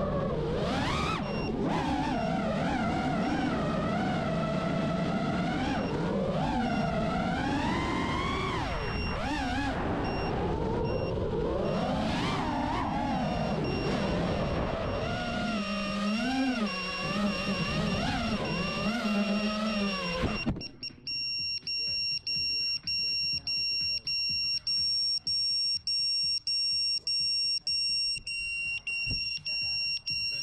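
FPV quadcopter's motors whining, their pitch rising and falling with the throttle. About twenty seconds in the motors stop and the quad's electronic buzzer starts beeping repeatedly, about one and a half beeps a second, as it does once it has been disarmed on the ground.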